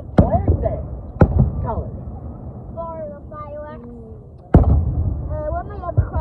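Aerial firework shells bursting: two sharp booms about a second apart near the start and a third about four and a half seconds in, each followed by a low rumble. Onlookers' voices are heard between the bursts.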